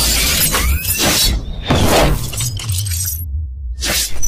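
Cinematic logo-reveal sound effects: noisy whooshes and shattering, metallic hits over a steady deep bass rumble. The hiss and hits cut out shortly before the end, leaving only the bass.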